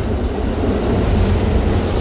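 Steady low rumble of a New York City subway car running, heard from inside the car.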